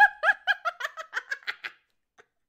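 A woman giggling: a run of quick, high-pitched laugh pulses, about six or seven a second, that fade and stop a little before the end.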